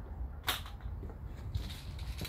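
A single sharp click about half a second in, over a low steady rumble of wind on the microphone, with a few fainter ticks near the end.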